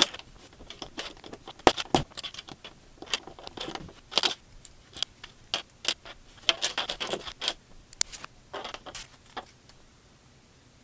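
LEGO pieces being handled and snapped together: irregular small plastic clicks, rattles and scrapes as bricks are picked out of a loose pile and pressed onto each other, with a few sharper clicks standing out.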